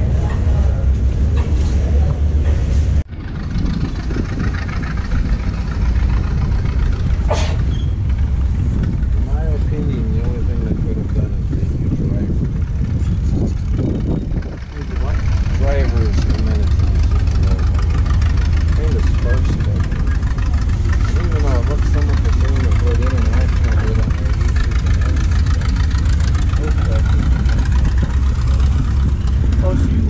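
A steady low rumble with indistinct voices in the background, dipping briefly about three seconds in.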